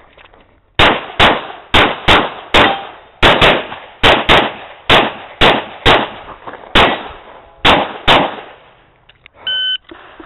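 Rapid pistol fire from a Glock 35 in .40 S&W: about fifteen shots, mostly in quick pairs about a third to half a second apart, with short pauses between pairs. Near the end an electronic shot timer gives a short, steady start beep.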